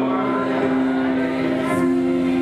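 A group of teenagers singing a song into microphones, holding a long sustained chord.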